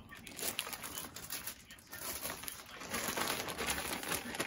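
Crinkling and rustling of a thin clear plastic bag as a purse-insert organizer is pulled out of it, irregular and on and off.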